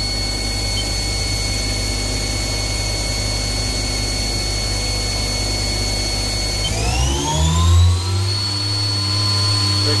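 Spindle of a 2004 Haas SL10T CNC lathe running with a steady high whine, then about seven seconds in speeding up, the whine rising in pitch and settling at a higher steady tone a second or so later as the spindle reaches 6,000 RPM.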